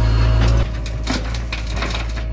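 JCB 3DX backhoe loader's diesel engine running, loud as heard from inside the cab. A little over half a second in, the sound drops and shifts to a crunching clatter of soil spilling from the loader's bucket into the tipper truck's steel body.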